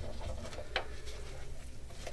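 Gloved hands handling and turning over a bracer armor piece, with faint handling noise and one light click about three-quarters of a second in, over a steady low hum.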